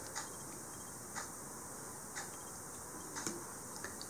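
Quiet room tone with faint, light ticks about once a second.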